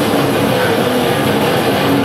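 Live heavy metal band playing loud, with electric guitars and drums, recorded from the crowd.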